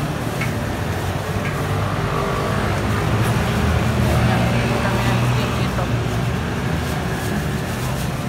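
Low engine rumble of a passing motor vehicle, swelling about halfway through and then easing off, with people's voices in the background.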